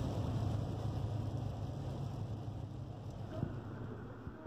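Steady low drone of engine and road noise inside a moving van, easing slightly in volume near the end.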